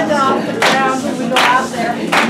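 Dance music with a singer, and hands clapping in time with it, a sharp clap about every three-quarters of a second.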